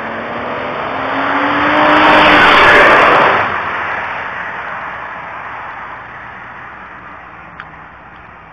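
A car going fast past the camera: engine and tyre noise build, are loudest about two to three seconds in, then fade slowly as it drives off.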